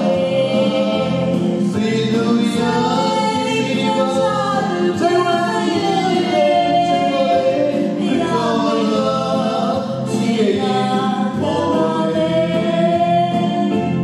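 A man and a woman singing a gospel duet into microphones, with musical accompaniment under their voices.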